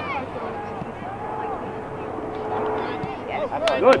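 Distant voices of spectators and players calling out across an open playing field. A couple of sharp clicks come near the end, and a close voice begins to say "Good".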